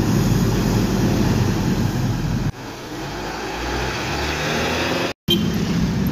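Diesel engine of an intercity coach pulling away in street traffic, a loud low rumble. About two and a half seconds in it cuts off suddenly to quieter road noise that swells, with a brief silence just past five seconds.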